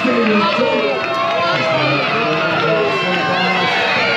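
A man announcing to an audience, heard over the chatter of a large crowd of spectators.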